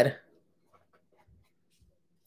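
The end of a woman's spoken word, then near silence with faint, soft rustles of a paper perfume tester strip being handled.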